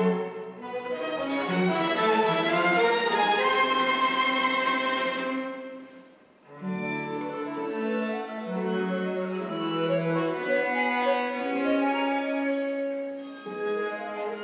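Live chamber ensemble of bowed strings (violin, viola, cello) with classical guitar and accordion playing a slow piece in sustained chords. The music fades to a brief pause about six seconds in, then a new phrase of held tones begins.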